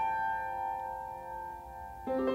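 Piano music: a held chord ringing on and slowly fading, with no new notes struck.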